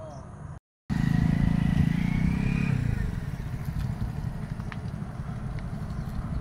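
A motor vehicle passing close by: a loud low engine-and-road rumble that comes in just under a second in after a short break, then eases to a steadier, quieter rumble about three seconds in.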